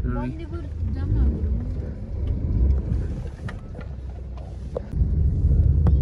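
Low, steady rumble of a car's engine and road noise heard inside the cabin, with a few faint clicks. About a second before the end, a louder low rumble sets in.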